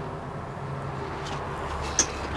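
A steady low mechanical hum, like an engine running at idle in the background, with a short sharp click near the end.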